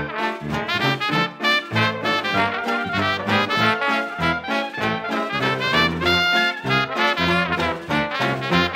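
Traditional New Orleans-style jazz band playing in full ensemble: trumpet, clarinet and trombone over tuba bass, banjo and drums, with a held high note about six seconds in.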